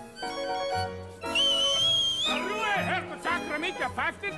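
Light dance music playing, cut across about a second in by a loud, shrill whistle held for about a second that rises slightly at its end: a two-finger whistle of disapproval. Raised voices break in after it.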